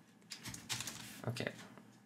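Computer keyboard typing: a short run of quick, separate keystrokes.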